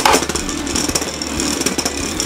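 Two Beyblade Burst spinning tops whirring across a plastic Beystadium floor, with a fast, dense rattle over a steady low hum.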